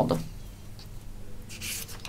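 A sheet of paper rustling briefly as hands grip and move it, starting about one and a half seconds in.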